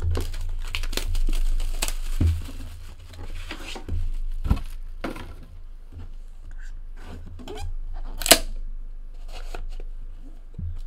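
Cardboard and wrapping being torn and crinkled as a sealed 2017 Panini National Treasures football hobby box is opened by hand, densest in the first few seconds. A sharp snap comes about eight seconds in.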